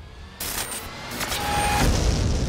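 Film-trailer sound effects: a sudden rushing noise comes in about half a second in, with a low rumble that swells louder toward the end.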